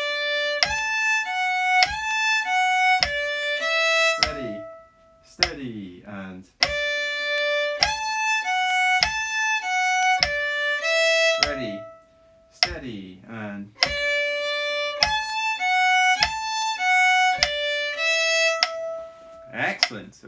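Fiddle playing the same single bar of a folk tune three times over at a steady tempo. Each pass is a run of about eight bowed notes ending on a held note, with a short spoken count-in between the passes.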